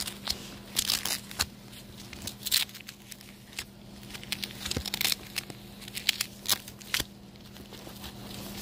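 Rustling and crinkling of packing as a cardboard shipping box with a styrofoam liner is opened and its lid pulled off, in short irregular bursts.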